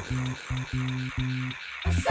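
Dance-mix music: a bass line of short, evenly repeated notes under a hissing layer of noise. It cuts out briefly near the end, just before fuller music with sustained pitched notes comes in.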